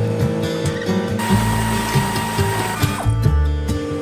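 Pneumatic air ratchet running for about a second and a half in the middle, a hiss with a steady whine, as it undoes a fender-mount bolt on a steel trailer. Background music plays throughout.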